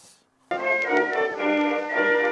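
Background music cuts in suddenly about half a second in: held chords that change every half second or so.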